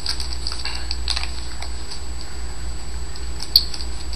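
Trading cards thumbed through by hand one at a time: a run of light card clicks in the first second and a half, then a single sharper click near the end, over a steady low hum.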